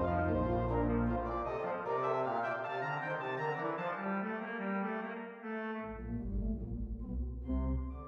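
Church organ playing a canon: several held, interweaving voices over a deep pedal bass. The pedal bass drops out about a second and a half in and comes back at about six seconds.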